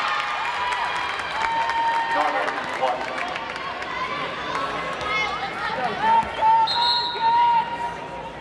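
Voices of players and spectators carrying through an indoor gym between volleyball rallies, with short sneaker squeaks on the hardwood court.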